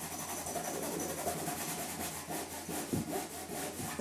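Fingertips rubbed rapidly back and forth on a sofa's fabric upholstery: a steady, scratchy rubbing made of many quick strokes.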